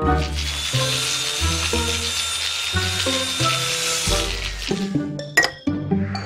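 Cartoon background music with a line of short, bouncy low notes. Over it, a steady high hissing sound effect fades out about four and a half seconds in, and a couple of sharp clicks come near the end.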